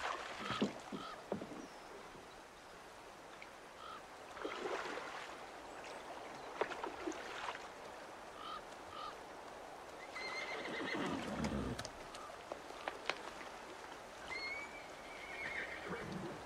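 A horse whinnying, a wavering call about ten seconds in and another near the end, over faint water splashes and short chirps.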